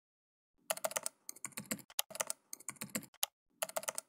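Typing on a computer keyboard: quick runs of keystroke clicks with short pauses between them, starting just under a second in.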